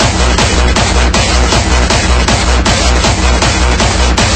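Loud hardstyle electronic dance music with a heavy, distorted kick drum pounding steadily about two and a half times a second under dense synth sound.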